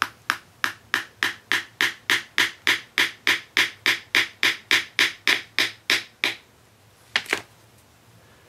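Hammer tapping a small nail through the horn into the wooden base plug of a powder horn: light, rapid taps about three a second, each with a short ring, for about six seconds. After a pause come two more taps near the end.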